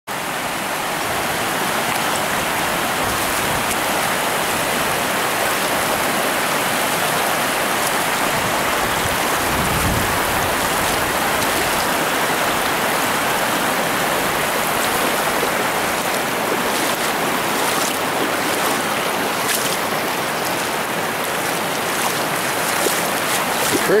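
River water rushing over shallow rock shoals and ledges: a steady rush of small rapids.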